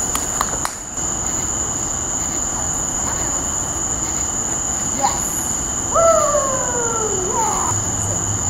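Steady high-pitched chorus of night insects such as crickets, with a few sharp clicks at the start. About six seconds in, a drawn-out voice slides down in pitch for about two seconds, then turns briefly upward.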